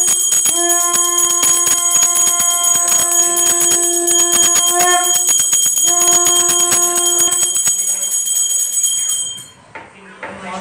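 Small brass puja hand bell (ghanti) rung rapidly and without pause, its high metallic ringing steady, until it stops shortly before the end. Alongside it a long steady lower tone is held in three stretches, the last ending about two seconds before the bell stops.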